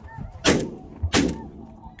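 Two shotgun shots about two-thirds of a second apart, fired at a passing goose, with a goose calling faintly just before the first shot.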